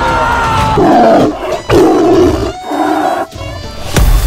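Tiger roar sound effects, a few loud roars in a row, over background music.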